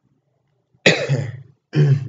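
A person coughing twice: one sharp cough about a second in and a second one near the end.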